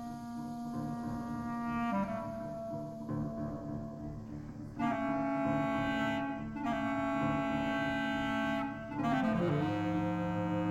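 Bass clarinet playing long sustained notes, moving to a new note about two seconds in and again near five seconds, with a falling run of notes near the end, over a steady low backing layer.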